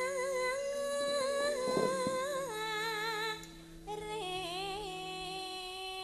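Female sinden singing a slow, ornamented Javanese vocal line: long held notes with wavering vibrato and sliding steps between pitches, with a short break about three and a half seconds in. Soft sustained keyboard tones sit underneath.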